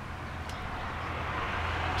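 A car approaching on the road, its tyre and engine noise growing steadily louder through the second half. A faint click about half a second in.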